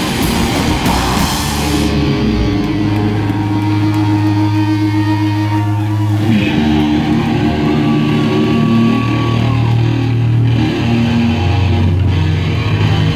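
Live loud rock band through amplifiers: drums and cymbals crash for about the first two seconds, then stop. Held, ringing electric guitar and bass guitar notes carry on alone, with a higher tone that bends in pitch about halfway through.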